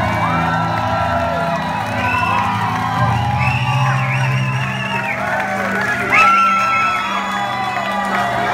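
A live rock band's last notes are held under a crowd cheering, whooping and singing along, with one loud whoop about six seconds in.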